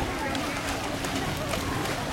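Indistinct voices of people in the distance over a steady wash of outdoor noise, with small waves lapping at the shore.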